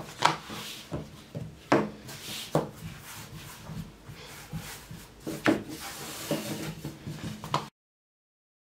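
A long, thin wooden rolling pin (oklava) rolling and pressing a wide sheet of mantı dough on a tabletop: a steady rubbing of the dough, pin and floury palms, with a handful of sharp wooden knocks as the pin is moved. The sound cuts off suddenly near the end.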